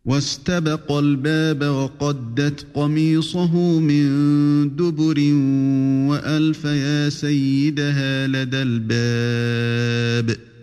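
Male voice chanting Quranic verses in Arabic in melodic recitation (tajwid), with long held notes and gliding turns of pitch.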